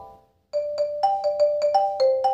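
Xylophone struck with yarn mallets. After about half a second of silence, a quick run of about nine strokes alternates between two notes, each note ringing briefly.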